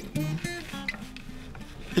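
Acoustic guitar played softly: a few notes plucked near the start, left ringing and slowly fading.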